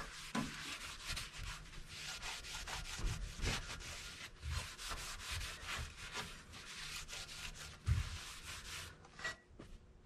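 Terry cloth rag rubbed briskly over a chrome car bumper, buffing off metal-polish residue: a quick, steady run of wiping strokes that stops about a second before the end.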